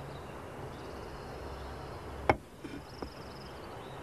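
Faint outdoor countryside ambience with a cricket chirping in short runs. A single sharp click sounds a little past two seconds in, followed by two softer clicks.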